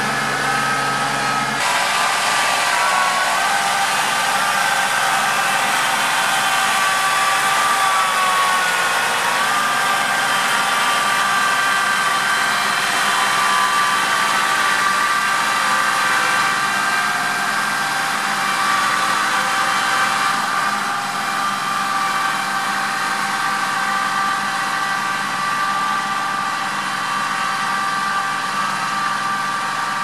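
Kubota compact tractor's diesel engine running steadily under load while pulling a subsoiler shank through soft, wet ground; its pitch dips briefly and recovers about nine seconds in, and it grows slightly fainter in the second half as the tractor moves away.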